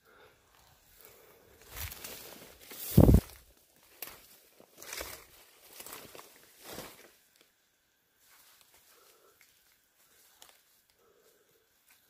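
Footsteps and brushing through forest undergrowth: a series of irregular rustles, the loudest about three seconds in, dying away after about seven seconds.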